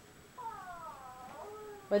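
A drawn-out, high whining cry that glides down in pitch for about a second, starting about half a second in, followed by a shorter, lower note.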